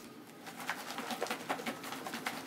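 Kale leaves shaken hard in a closed plastic food container with olive oil, rustling and rattling against the sides in a fast run of ticks, a shortcut for massaging the kale.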